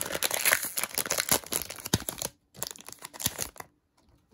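Shiny foil wrapper of a hockey trading-card pack crinkling and tearing as it is torn open by hand, in two stretches with a brief break a little past halfway, stopping shortly before the end.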